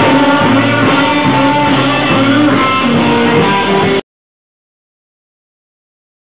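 A band playing live with a prominent electric guitar. The music cuts off abruptly about four seconds in.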